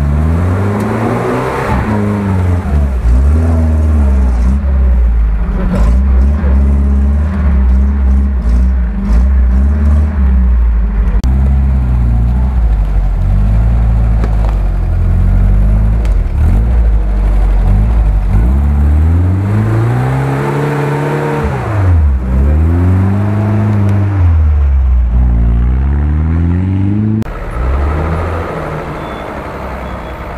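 A UAZ off-road vehicle's engine revving up and down over and over as the truck works its way through a deep mud rut. Near the end the sound changes suddenly to a second off-road vehicle's engine, a little quieter.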